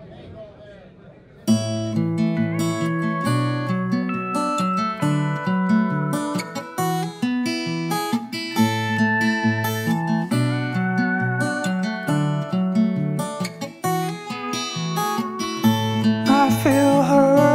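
Acoustic guitar opening a slow country song, chords played over a moving bass line. It starts suddenly about a second and a half in, after a brief quiet, low murmur.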